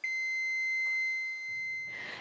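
A steady, high-pitched electronic alarm tone: one unbroken note that starts suddenly and holds, a little softer in the second half.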